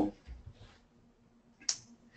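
A single sharp computer mouse click about three-quarters of the way in, advancing the presentation slide, in an otherwise quiet pause.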